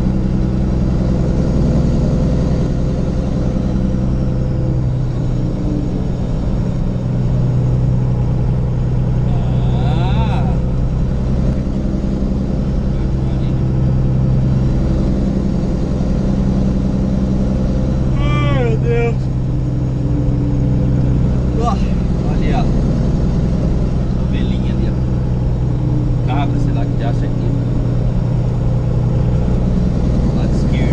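Truck engine running steadily with road noise, heard from inside the cab while driving at a constant pace. Brief high-pitched sliding sounds come through about a third of the way in and again just past the middle.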